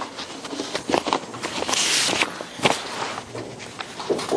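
A stack of paper sheets being leafed through and shuffled: rustling with scattered small clicks and knocks, and a louder rustle about two seconds in.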